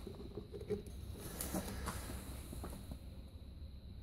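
Faint, scattered small clicks and rustling from handling a carbon brush in a small plastic bottle of acid as it is dipped and drawn out.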